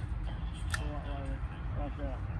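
Steady low rumble of wind on the microphone, with one sharp click about three quarters of a second in and brief, faint wordless voice sounds after it.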